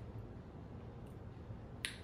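Faint, steady room hum while limeade is tasted from a spoon, with one sharp click just before the end.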